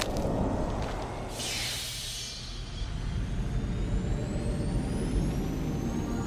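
Ambient soundtrack sound design: a steady low rumble, with a hissing whoosh about a second in that fades out within about a second, then thin tones that slowly rise in pitch.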